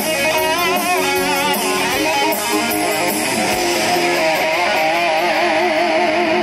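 Live rock band playing an instrumental passage: an electric guitar lead with wavering, bent notes over drums and cymbals.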